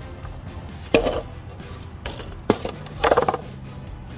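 Background music with two sharp knocks and a short rattle: longboards being flipped over onto asphalt, their wheels and decks knocking on the ground.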